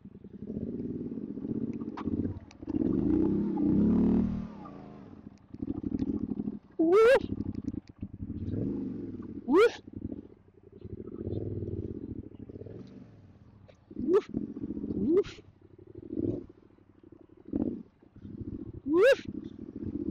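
Adventure motorcycle engine, a Yamaha Ténéré 700, working under load on a slippery muddy climb. The throttle opens and closes in uneven bursts with short lulls between, and there are five sharp revs scattered through.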